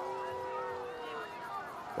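Stadium crowd ambience at a football game, a low steady murmur with a few faint held tones that fade out about one and a half seconds in.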